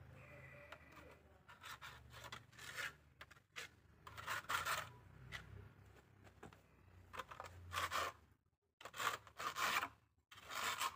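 A steel plastering trowel scraping and smoothing wet cement render on a brick wall, in a series of short, irregular strokes.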